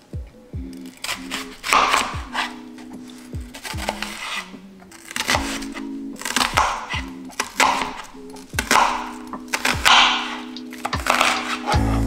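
Background music with a gentle melody plays throughout. Over it, a chef's knife slices through an onion on a cutting board, giving repeated crunchy cuts and sharp knife taps on the board.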